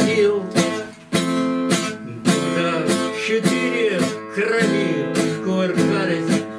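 Acoustic guitar strummed in a steady rhythm, roughly two strokes a second, chords ringing between the strokes.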